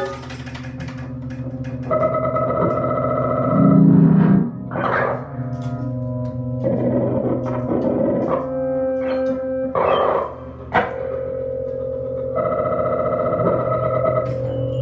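Free-improvised music on effects-laden electric guitar and keyboard electronics: layered held tones that shift every few seconds, broken by swelling noisy bursts, with a loud low surge about four seconds in.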